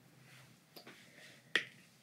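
A single sharp click about one and a half seconds in, with a fainter click a little before the one-second mark, over quiet room tone.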